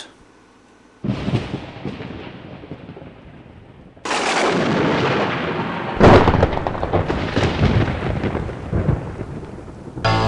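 Booming sound effects with rolling rumbles: a crash about a second in that dies away, another about four seconds in, and the loudest, crackling crash about six seconds in that rolls off slowly.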